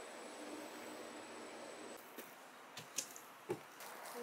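Quiet ride in a glass-doored elevator: a faint steady hum with a thin high whine. It cuts off halfway through, giving way to quiet open-air ambience with a few soft taps.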